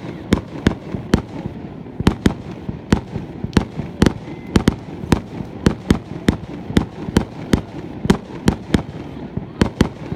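Aerial fireworks exploding in quick, steady succession, about three sharp bangs a second, over a continuous low rumble.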